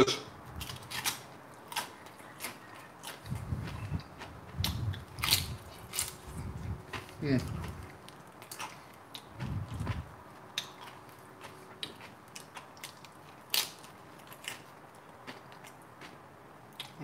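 A person chewing and crunching tortilla chips loaded with nacho dip: sharp crunches throughout, with deeper chewing stretches around four, seven and ten seconds in.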